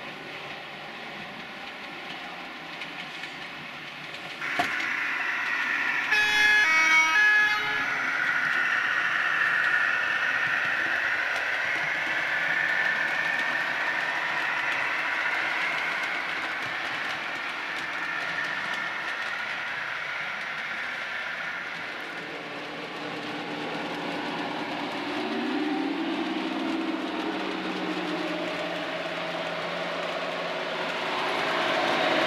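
DCC sound-fitted model diesel locomotives running on a layout. A click about four seconds in, then a horn blast of about a second and a half. After that the recorded diesel engine sound runs steadily, shifting lower with a rise in engine pitch in the last few seconds.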